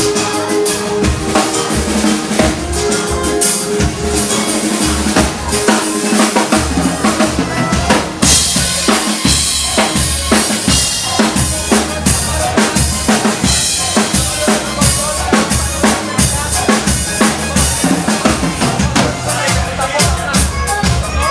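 Band playing a Greek pop song live, the drum kit keeping a steady beat on bass drum and snare under bass and other instruments.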